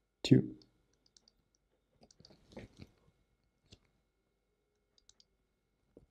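Faint, scattered clicks and taps of a stylus on a graphics tablet while handwriting, a small cluster of them a couple of seconds in and single ticks later.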